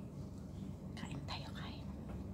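Faint whispered speech about a second in, over a low steady room hum.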